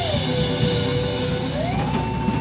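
Live rock band playing, with drums, electric guitars and keyboard. One sustained high note slides down at the start, holds, and slides back up near the end, a slow siren-like wail over the band.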